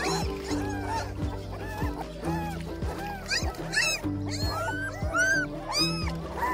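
Young puppies whimpering and yelping in short, high cries that rise and fall, many in quick succession, over background music with a steady beat.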